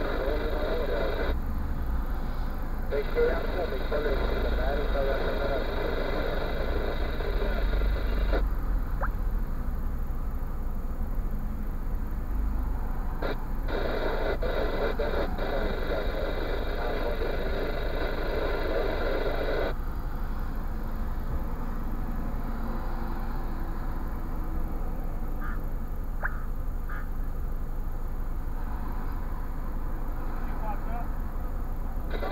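Muffled voices from a radio in the car cabin, cutting in and out abruptly in several stretches, over the low steady hum of the car's idling engine.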